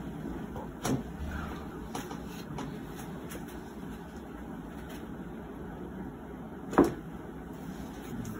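A patient's leg being flexed and rotated at the hip on a treatment table: two short, sharp clicks or knocks, one about a second in and a much louder one near the end, over a steady room hum.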